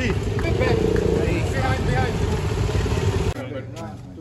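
Motorcycle engine idling, a loud low rumble with people's voices over it, which stops abruptly about three seconds in, leaving only quieter talk.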